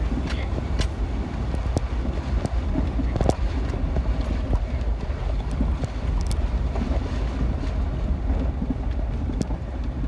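Off-road vehicle driving slowly over a rutted dirt trail, heard from inside: a steady low rumble of engine and tyres, with scattered knocks and rattles as it bumps through the ruts.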